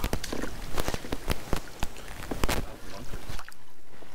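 A fish thrashing in a landing net at the side of a canoe: irregular splashes and sharp knocks that stop about three and a half seconds in.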